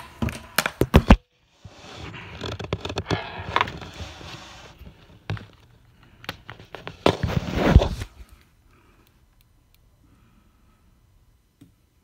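Handling noise of a charger cable and phone close to the microphone: sharp clicks and knocks at first, then rustling and scraping with scattered clicks, and a louder rustle with a thump about seven seconds in, before it goes near quiet for the last few seconds.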